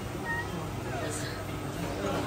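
Faint background chatter and room noise of a restaurant dining room, with no loud event.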